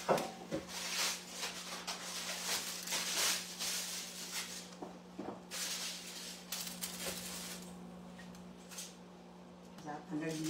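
Floured dumpling dough strips being dropped by hand into a pot of boiling broth: soft, rustling splashes that come and go in swells of a second or so, over a steady low hum. The swells thin out in the last couple of seconds.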